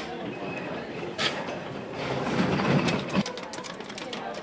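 A short laugh, then a post-office box combination dial being worked by hand: a sharp click about a second in, then a loud stretch of rattling and ratcheting from about two seconds in.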